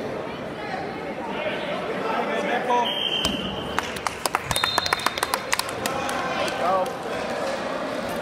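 Spectators and coaches shouting at a wrestling match in a large gym. About three seconds in comes a short high whistle, the referee's signal that the fall (pin) is called. Scattered hand clapping follows for a couple of seconds.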